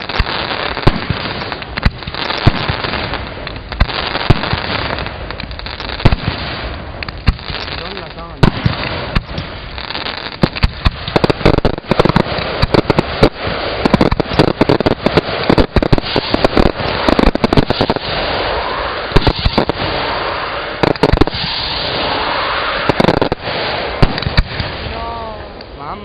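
Aerial fireworks display: shells bursting in a near-continuous string of sharp bangs, with crackling between them. The bangs come thickest from about halfway through.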